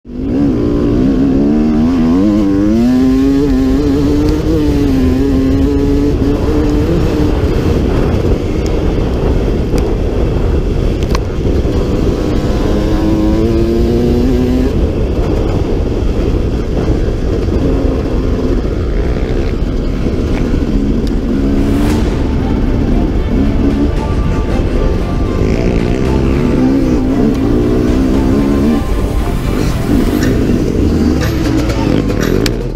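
1995 Honda CRE 250 two-stroke single-cylinder dirt bike engine being ridden hard, its pitch rising and falling again and again as the throttle is opened and closed through the gears. A steady rush of wind and ride noise runs under it.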